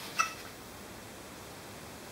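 A red-tailed black cockatoo gives one brief, high squeak just after a faint click, while medicine drops are run into its beak.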